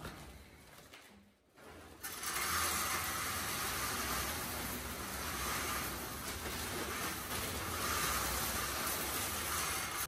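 Wood pellets pouring from a sack into the top hopper of a Solzaima pellet boiler: a steady hiss that starts abruptly about two seconds in and holds evenly.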